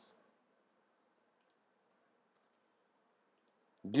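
Three faint computer mouse clicks, about a second apart, over a low steady hiss.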